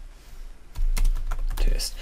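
Typing on a computer keyboard: a quick run of keystrokes that starts just under a second in, after a quiet moment.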